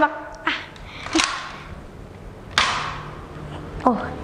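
Nerf Elite Quadrant dart blaster being shot: three sharp clacks about half a second, a second and two and a half seconds in, the last the loudest.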